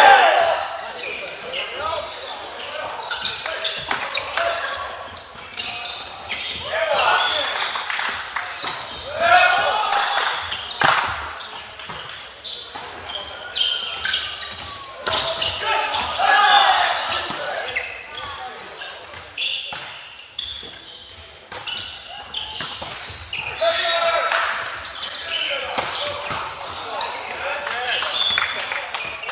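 Indoor volleyball play echoing in a large sports hall: repeated sharp hits of the ball, with players' short shouts and calls in bursts through the rallies.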